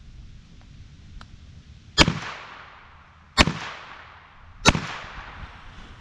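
Three shots from an H&R 922 .22 revolver firing CCI .22 Short rounds, about a second and a half apart, each sharp crack followed by a short echo.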